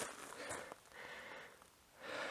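Faint breathing of a hiker climbing uphill: two soft breaths about a second apart.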